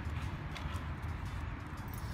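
Skateboard wheels rolling over rough asphalt: a steady low rumble with faint scattered clicks.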